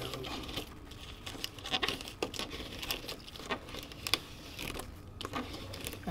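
Thin BF Sport heat transfer vinyl being weeded by hand: the excess vinyl is peeled off its carrier sheet with soft crinkling and scattered small crackles.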